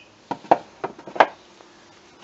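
Wooden hive boxes and lid knocking together as a stingless bee hive is reassembled: four sharp knocks over about a second.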